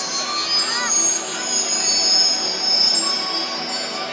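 Spectators' voices chattering over the light show's music, which carries high, sustained chime-like tones.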